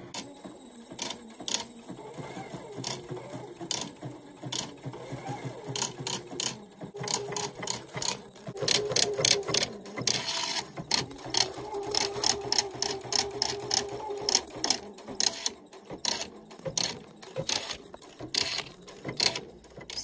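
Pfaff creative icon embroidery machine stitching with its creative Ribbon Embroidery Attachment: a fast run of needle clicks over the steady hum of the motor, busiest about halfway through.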